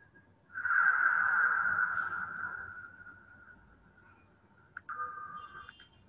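A whooshing sound effect pitched in a narrow band from the soundtrack of an animated gas-lift video. It comes in sharply about half a second in and fades away over the next few seconds. A shorter, weaker whoosh with a few clicks follows near the end.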